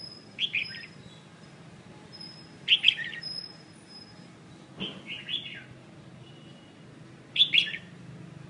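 Caged songbird calling four times, each a quick cluster of chirping notes, with faint thin high whistles in between.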